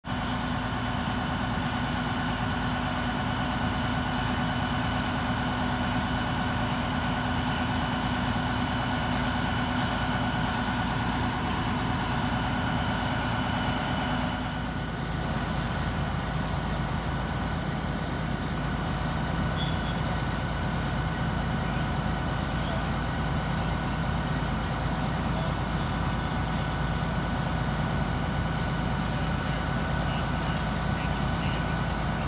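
Fire engine's diesel engine running steadily at a constant speed, its tone changing about halfway through.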